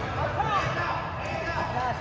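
Indoor basketball game in a gym: short high-pitched squeaks of sneakers on the court floor and a basketball bouncing, over spectators' voices and hall echo.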